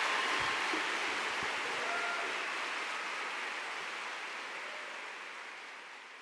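Large hall audience applauding, a dense steady clatter of many hands that gradually fades away.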